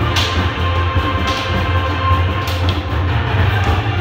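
A group of drummers playing large metal-shelled drums together: a dense, rolling beat with sharp accented strikes about once a second.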